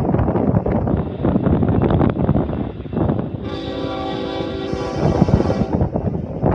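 Wind buffeting the microphone over a low rumble, then about three and a half seconds in, a Union Pacific locomotive's air horn sounds one long blast of several steady tones at once, lasting about two seconds, the warning for the grade crossing ahead.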